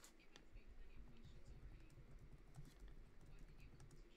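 Faint typing on a laptop keyboard: scattered light key clicks.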